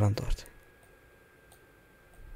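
A spoken word trails off in the first half-second, then a faint computer mouse click about a second and a half in, over quiet room tone with a faint steady whine.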